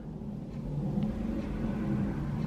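Jet aircraft passing over, a low steady rumble that grows slowly louder.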